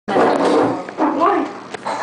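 Indistinct voices of several people in a small room, with a single sharp click near the end.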